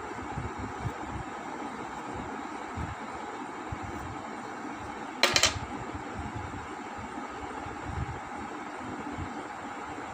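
A steady background hum and hiss, with soft irregular bumps as a hand colours paper with a pink pastel. One short, sharp rattle comes about five seconds in and is the loudest sound.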